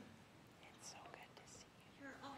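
Near silence: room tone with faint, indistinct whispered voices.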